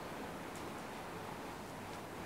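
Quiet room tone: a low, steady hiss with a faint click about half a second in.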